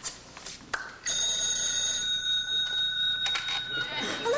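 A telephone rings once, a steady ring lasting about two seconds that starts about a second in, after a few light clicks from the switchboard plugs and keys.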